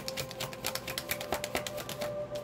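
A deck of tarot cards being shuffled by hand: a rapid run of crisp card flicks that stops near the end.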